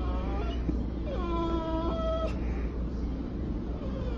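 A dog whining: a faint short whine at the start, then a longer whine of steady pitch from about a second in, lasting just over a second. It is this dog's way of crying instead of barking, wanting to get to the other dogs.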